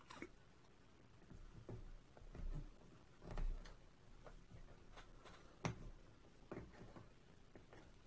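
Faint handling sounds: scattered light clicks and rubbing as a rubber mounting grommet is pressed by hand into a hole in a record changer's metal top plate.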